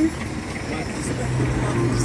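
Minibus engine running with a low, steady rumble, heard from inside the cab; a low steady drone sets in about a second in.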